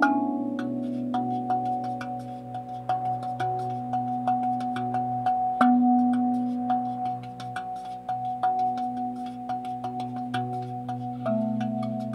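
RAV drum, a steel tongue drum of the handpan family, played with light finger taps, a few strikes a second. Its ringing notes overlap and shift pitch as different tongues are struck, over a steady low sustained tone.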